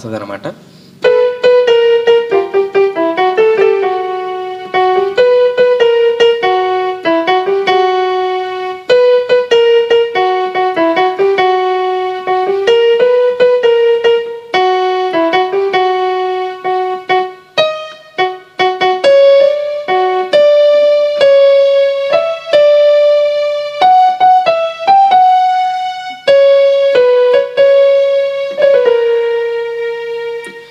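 Electronic keyboard playing a melody one note at a time, some notes held longer than others.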